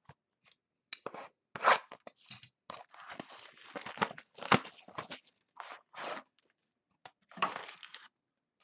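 A sealed trading-card box and its wrapping being torn open and handled: a run of irregular crinkling, crackling and tearing, with two louder cracks, one under two seconds in and one about halfway.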